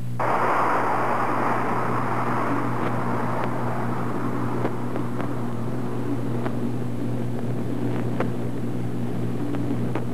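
A rushing hiss that cuts in suddenly and slowly fades, over a steady low hum, with a few faint clicks.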